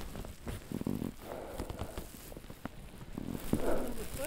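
Irregular crunching and rustling of boots kicking steps into snow and of clothing close to the microphone, as a climber goes up a steep snow ridge on foot.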